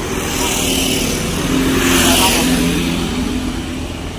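A motor vehicle passing close by: its engine and road noise swell to a peak about two seconds in and then fade, over a steady low traffic rumble.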